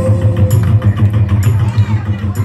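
A live band's song ending: a low pulsing note keeps sounding through the PA after the last sung note stops, and audience voices begin to shout.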